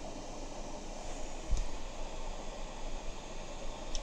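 Steady background hiss, with one soft low thump about a second and a half in.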